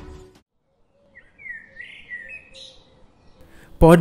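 Faint bird chirps and twitters, starting about a second in and running for about two seconds, after a stretch of silence.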